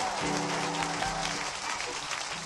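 Music playing from a vinyl record, with held bass notes under a dense crackling haze like audience applause and crowd noise, as on a live recording.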